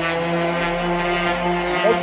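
Orbital sander with a foam polishing pad running at a steady pitch against a drum shell, buffing heavy-cut compound into the polyurethane clear coat.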